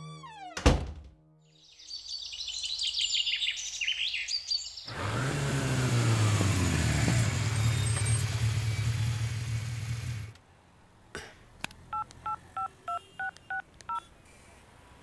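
A single thud, then high chirping, then a motorcycle engine running steadily for about five seconds before it cuts off suddenly. Near the end come electronic phone beeps in two alternating tones, about three a second.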